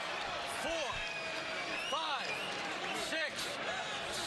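A boxing referee shouting the knockdown count over a kneeling fighter, one number about every second. The count carries over steady arena crowd noise, with a few sharp clicks.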